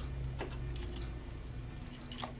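A few faint plastic clicks from an N scale caboose being handled on the track, one about half a second in and one near the end, over a steady low hum.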